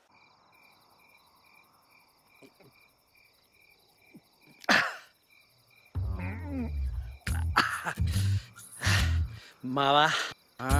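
Faint crickets chirping in a steady pulsed rhythm, about two chirps a second, against a quiet night background. A single short vocal sound breaks in near five seconds, and from about six seconds a man's voice comes in loud bursts over the crickets.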